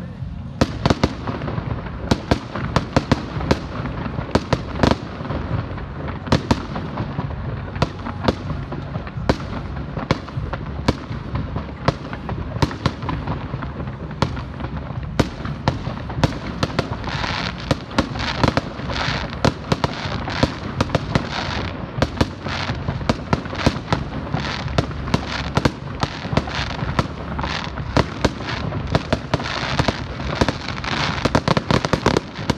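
Fireworks going off: a rapid, unbroken run of bangs and pops in quick succession, with a stretch of crackling about halfway through.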